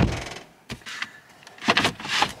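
Cushions and the slatted bed base of a van camper being handled: a scraping rustle at the start, a couple of light knocks, and another rustle near the end.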